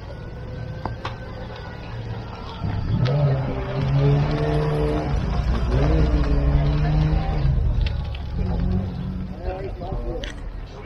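Citroën DS four-cylinder engine running as the car drives slowly past at close range. Its note holds steady, dips briefly and picks up again, then fades in the last couple of seconds.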